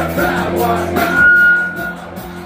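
Punk rock band playing live, heard loud from the crowd: electric guitar and drums, with one high note held for about a second midway, the loudest moment.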